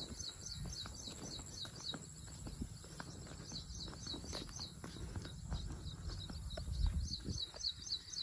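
A bird calling in rapid runs of short, high, falling chirps, about four or five a second, at the start and again near the end. Underneath is a steady low rumble with faint scattered clicks.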